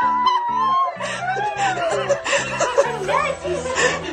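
Laughter over background music with a steady, repeating bass line.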